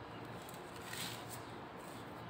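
Faint crinkling of a thin plastic bag being handled, a few soft crinkles over quiet room tone.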